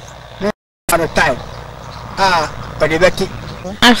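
Short spoken phrases that the recogniser did not write down, over a steady background hiss. The sound cuts out completely for a moment about half a second in.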